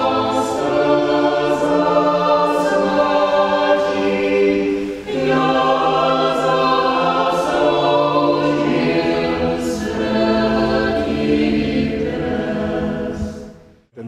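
A choir singing slow, long-held chords, with a short break about five seconds in, fading out at the end.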